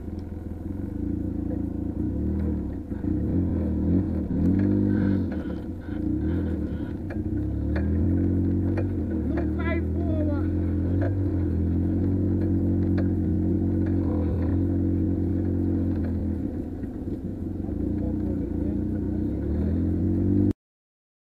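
Quad bike (ATV) engine running close by, its pitch rising and falling with the throttle in the first half, then holding steadier.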